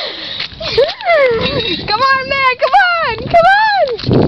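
A child's high-pitched wordless voice: several drawn-out cries that rise and fall in pitch, one after another.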